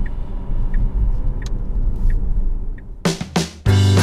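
Low, steady road and tyre rumble from a Tesla Model S, heard inside the electric car's cabin with no engine note. About three seconds in, background music with strummed strings and drums comes in and becomes the loudest sound.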